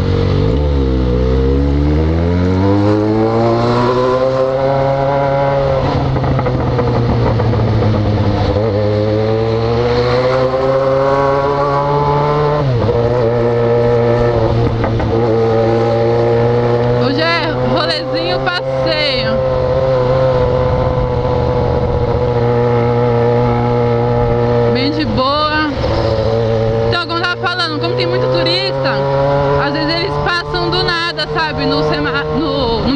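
Yamaha XJ6 inline-four motorcycle engine with an open, debaffled exhaust, heard from the rider's seat in city traffic. The engine note drops and then climbs over the first few seconds as the bike slows and pulls away again, then holds fairly steady while cruising, with a brief dip near the middle.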